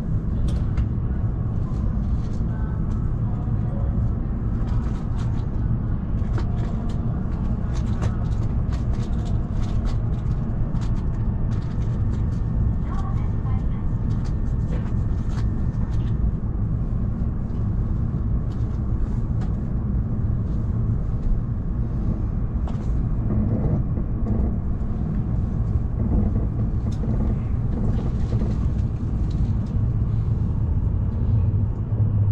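Steady low rumble inside an E7 series Shinkansen car standing at a platform, with faint scattered clicks over it.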